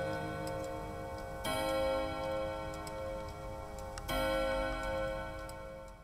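Wall clock ticking steadily, about two ticks a second, and striking its chime twice, about 2.5 s apart, each stroke ringing on and slowly dying away.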